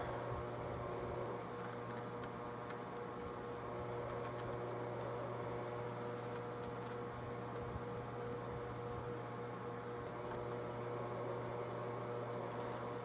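Steady low workshop hum, with a few faint ticks and light scratches from a pen marking out an outline on a walnut gunstock forend.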